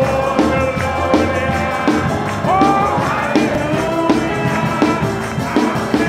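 Worship song in Spanish sung with a band: sung voices over drums keeping a steady beat, with tambourine.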